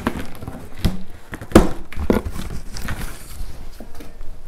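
Scissors cutting and tearing packing tape along a cardboard box's seam, with irregular scraping and crinkling. A louder knock on the box comes about one and a half seconds in.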